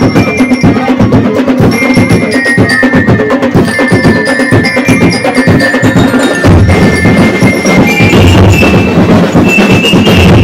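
Ati-Atihan festival drum-and-lyre band playing a fast, driving rhythm on bass drums and snare drums, with bell lyres ringing high metallic melody notes over the top. The low drums grow heavier about two-thirds of the way through.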